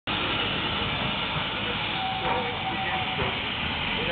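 Steam locomotive working in a station yard: a steady hiss of steam and running noise, with a faint steady note for about a second around the middle.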